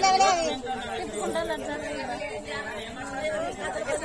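Speech only: a loud voice speaking at the start, then quieter talking with background chatter.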